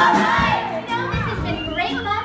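A live pop-song performance with several voices singing and calling out over the music. The backing beat drops out right at the start and the voices go on without it.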